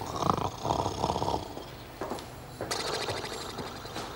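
Elderly woman snoring in a heavy sleep after drinking alcohol-laced cough mixture, with three rough snores in the first second and a half. A higher, rattling sound follows from about two and a half seconds in.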